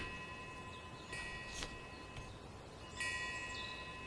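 Faint chimes ringing, struck twice: once about a second in and again near three seconds. Each ring is a cluster of high, clear tones that fades away, over a faint steady tone.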